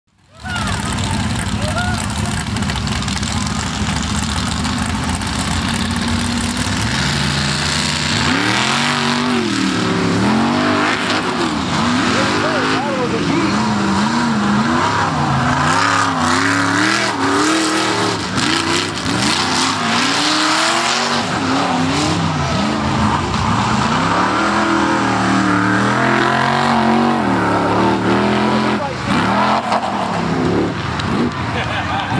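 Off-road race truck engines running loud, with a steadier engine sound at first. From about eight seconds in the engine revs up and down over and over as the trucks race around the dirt course.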